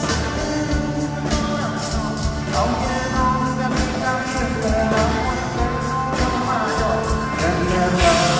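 Rock band playing live, with electric and acoustic guitars and a drum kit keeping a steady beat, and a lead voice singing from about two and a half seconds in.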